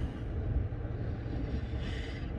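Low, steady rumble inside a parked car's cabin.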